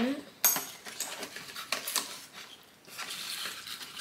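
Glass drinking straws clinking against each other as they are handled and lifted out of their set: several light, irregular clinks.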